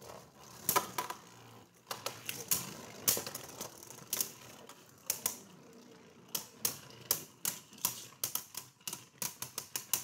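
Beyblade Burst spinning tops clashing in a plastic stadium: sharp, irregular clicks as they strike each other and the stadium wall, coming faster in the last few seconds.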